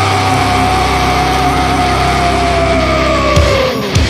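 A break in a thrash metal song: a low chord rings out with the drums paused, under two long held high notes. The lower note slides down in pitch near the end, as the drums come back in.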